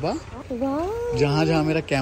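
Wordless voice sounds: a sing-song call that glides up and down, then a lower, drawn-out vocal sound from about halfway through.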